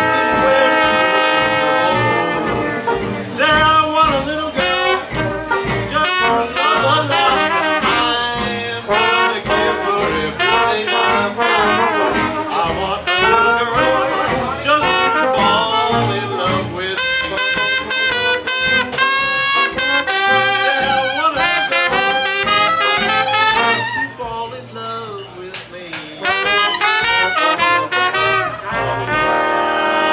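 Traditional New Orleans-style jazz band playing: trumpet, soprano saxophone and trombone weaving lines together over string bass, banjo, guitar and drums. About three-quarters of the way through the band drops back briefly, then the horns return with long held notes.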